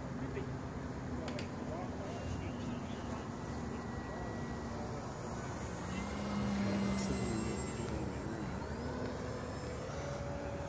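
Radio-controlled model airplane's motor and propeller humming as it flies a low pass, swelling loudest about six to seven seconds in, over a steady background rush.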